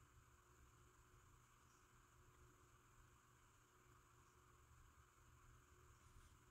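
Near silence: faint, steady room tone and hiss.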